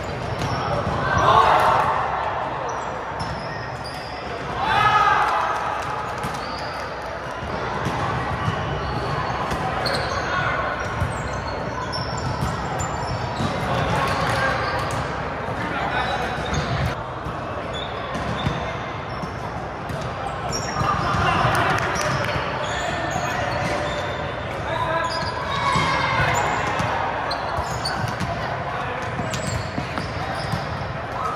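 Indoor volleyball play in a large gym: sharp smacks of hands on the ball and balls bouncing on the hardwood floor, mixed with players' shouts and chatter that echo through the hall. The loudest shouts come at about a second and a half in and again at about five seconds.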